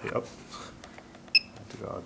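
A single short, high electronic beep from a Turnigy 9XR radio transmitter a little over a second in, as its potentiometer knob is dialled.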